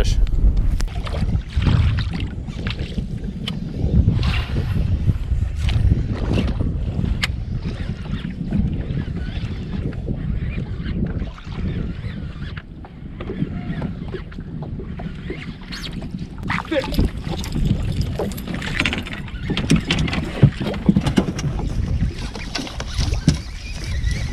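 Wind buffeting the microphone and water slapping against a fishing boat's hull, a steady low rumble. Scattered short clicks and knocks of rod, reel and boat handling run through it and grow busier over the last several seconds.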